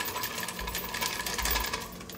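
Softened butter being scraped off its wrapper into a stainless-steel stand-mixer bowl with a spatula: a run of rapid small clicks and scrapes against the bowl.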